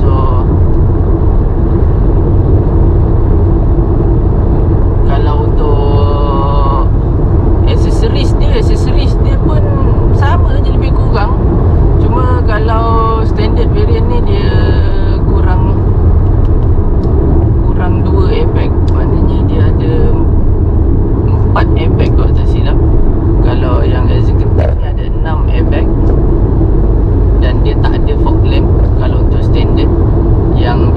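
Loud, steady road and engine rumble inside a moving Proton X50's cabin, with a man's voice talking on and off over it.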